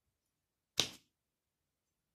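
A single short swish of a tarot card being slid or pulled from the deck, just under a second in; it starts sharply and dies away within a quarter second.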